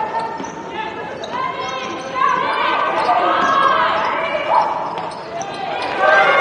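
Live court sound of a women's college basketball game in a near-empty gym: a basketball dribbling on the hardwood floor amid players' voices and high squeaks that rise and fall, with the hall's echo.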